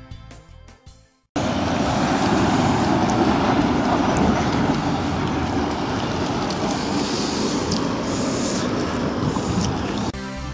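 Quiet background music fades out, then about a second in it cuts abruptly to loud, steady outdoor road and traffic noise, a continuous rumble and hiss.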